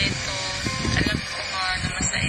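Background music with short bits of talking over it.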